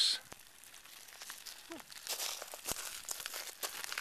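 Pahoehoe lava's cooling crust crackling and crinkling as the molten flow pushes and folds it: faint, irregular clicks and crackles that grow busier about halfway through.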